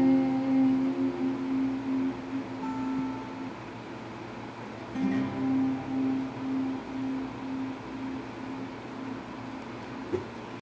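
Steel-string acoustic guitar played alone through the song's final bars. A ringing chord fades away, then a fresh chord is struck about five seconds in and is left to fade.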